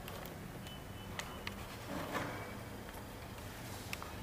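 A machine's steady low electrical hum, with a few light clicks and a brief rustling noise about two seconds in.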